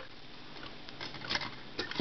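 Small plastic solar dancing figurines being handled and moved about on a wooden tabletop: a few light clicks and taps.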